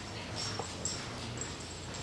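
Quiet room tone with a few faint clicks and brief high squeaks in the first second.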